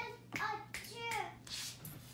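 Soft, indistinct speech in short phrases, likely a child's voice, with a faint steady hum underneath.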